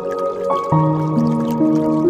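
Slow relaxation piano music, new notes entering every half second or so, over a background of dripping, trickling water.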